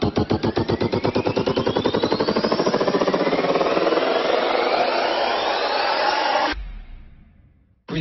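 Dance remix build-up: a chopped sample repeats faster and faster until it blurs into a continuous roll, with two rising sweeps over it. It cuts off abruptly about six and a half seconds in, leaving a low boom that fades to near silence.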